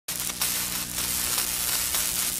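Steady crackling hiss of an electric-static sound effect, with a faint low hum under it.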